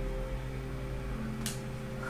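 Soft background music holding a sustained chord of steady low tones, with a note changing a little past a second in, and one faint click about one and a half seconds in.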